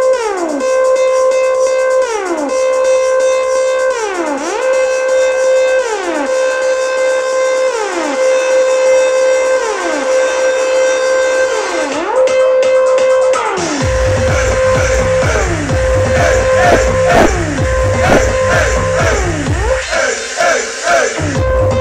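Electronic dance music from a DJ set played loud over a club sound system. A breakdown holds a synth tone with a falling pitch sweep every two seconds or so, then the bass and beat drop back in about 14 seconds in.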